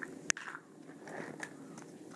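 Quiet handling sounds, likely small plastic toy figures being picked up off camera: one sharp click about a third of a second in, then faint rustling.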